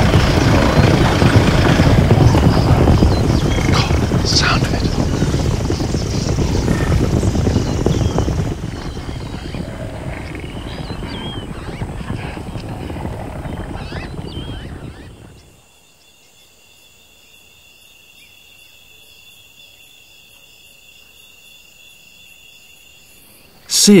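Herd of African buffalo running, a loud rumble of hooves that dies down in steps after about eight seconds. From about fifteen seconds only a quiet background of steady, high insect trilling is left.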